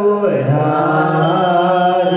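Male voices chanting Ethiopian Orthodox liturgical chant. The pitch glides down about a quarter-second in, then settles into long, held notes.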